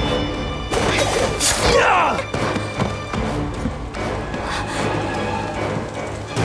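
Dramatic film score with fight sound effects: a few sharp thuds and impacts in the first two seconds, then the music carries on.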